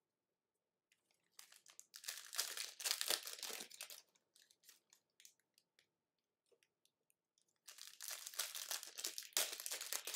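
Foil trading-card pack wrappers crinkling and tearing as packs are ripped open by hand, in two spells: one from about a second in, and another near the end.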